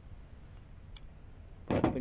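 One short, sharp metal click about a second in from the old pair of pinking shears being handled, over a faint background. A man's voice starts near the end.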